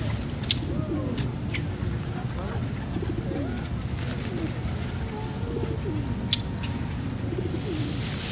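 Feral pigeons cooing again and again, low coos that slide up and down in pitch, with a few sharp clicks over a steady low background noise.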